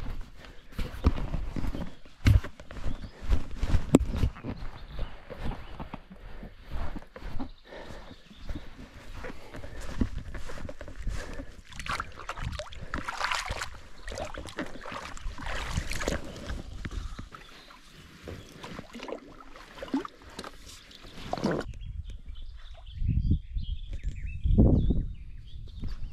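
Footsteps through loose sand and then wading in shallow water, with rough knocking and wind buffeting on a body-worn camera's microphone. Irregular thumps and scuffs throughout, with a few low thumps near the end.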